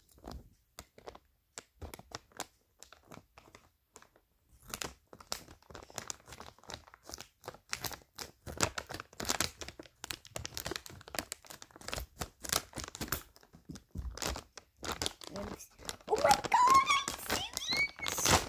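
Crinkling and rustling of a large plastic mystery bag as it is handled and cut open with scissors: a few scattered crackles at first, then dense crinkling from about five seconds in.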